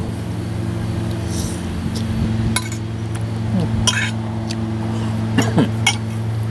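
A spoon clinking a few times against the inside of a thermos of soup while eating, the clinks spread over the second half, over a steady low hum.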